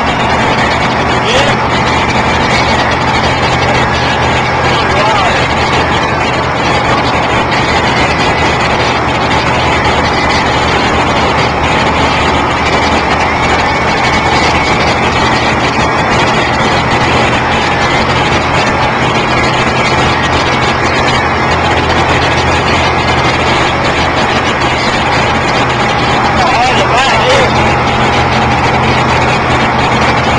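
A steady, loud motor rumble with a rushing noise over it and indistinct voices underneath.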